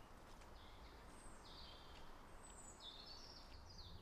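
Faint woodland ambience with a small bird giving short, high chirping notes, a few about a second in and a quicker run near the end.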